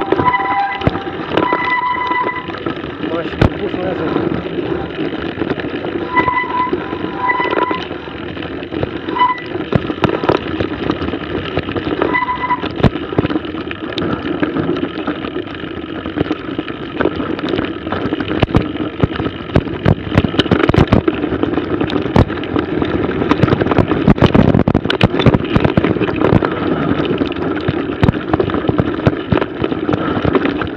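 Mountain bike ridden down a snowy trail, heard from a camera mounted on the bike or rider: a steady rush of wind on the microphone with frequent knocks and rattles as the bike goes over bumps. A few short high tones sound in the first dozen seconds.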